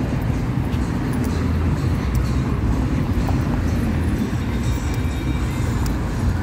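Busy street at night: music with a heavy, pulsing bass playing, mixed with the steady noise of car traffic close by.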